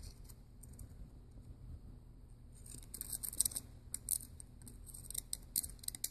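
Faint, quick scratching and clicking of a thin rod probing and scraping hardened crud packed inside a truck air brake regulator's outlet port, busiest in the second half. The deposits are hard and clog the port, which the owner takes for the reason the air brakes would not build pressure.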